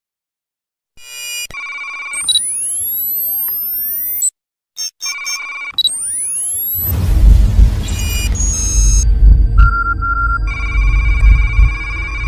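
Sci-fi intro sound design: electronic beeps and rising synthetic whooshing sweeps starting about a second in, then from about seven seconds a loud deep bass rumble under steady beeping tones.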